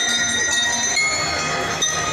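Drum and lyre band playing: bell lyres ring out held metallic notes at several pitches, changing to new notes about a second in, over drums, with a sharp hit near the end.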